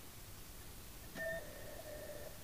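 Quiet room tone. About a second in, a faint click, then a faint, steady beep at two pitches held for over a second.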